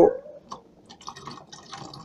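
Faint drips and trickles of liquid with a few small clicks, as green chlorella culture is tipped from a small tube into a glass jar.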